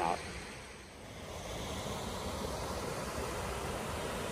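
Steady rushing of a shallow creek flowing over rocks, swelling about a second in and then holding even.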